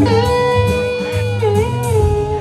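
Live rock band: an electric guitar strikes and holds a sustained lead note that bends and wavers about three-quarters of the way through, over bass guitar and drums.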